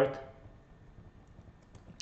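A few faint clicks of a computer keyboard, mostly in the second half, as moves are stepped through in chess software.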